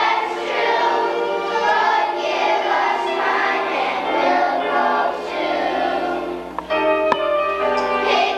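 Children's choir singing with accompaniment, with a single sharp knock about seven seconds in.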